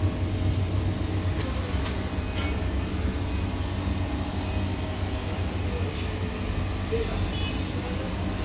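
A steady low mechanical hum, like a running machine such as a fan, with a few faint clicks over it.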